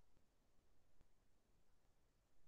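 Near silence: faint room tone, with one faint click about halfway through.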